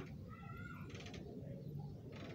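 A faint, short animal call, a pitched cry about half a second in, over low background noise.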